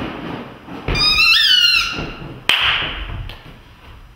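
A short, high, horn-like toot that bends upward in pitch about a second in, followed about a second and a half later by a sudden sharp hit that rings off briefly.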